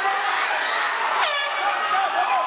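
A short horn-like blast about a second in that drops sharply in pitch and is held for a moment, over loud crowd shouting and chatter.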